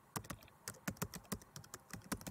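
Typing sound effect: quick, uneven key clicks, about six or seven a second, matched to text being typed out letter by letter.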